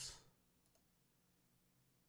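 Near silence, with a faint single computer mouse click about three-quarters of a second in as a video is started.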